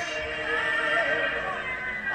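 Live concert music with a voice singing long, wavering notes.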